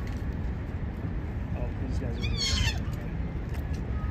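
A smooth-coated otter gives one high, wavering squeal, about half a second long, a little past the middle, over steady low background noise.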